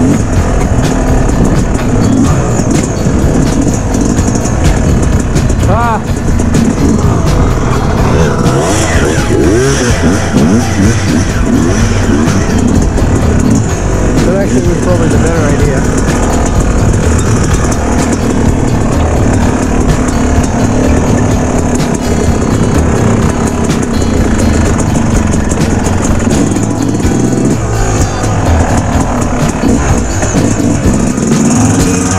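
Yamaha dirt bike engine running and revving under riding load, mixed with a music track.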